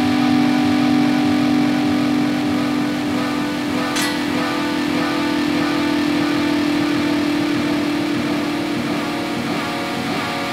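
Electric guitar played through a Line 6 Helix running 56 stacked delays, the notes smeared into a dense, sustained droning wash of repeats. A fresh picked note cuts in about four seconds in.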